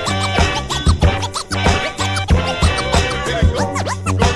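Turntable scratching over a steady beat with heavy bass: quick rising and falling pitch sweeps as the record is pushed back and forth.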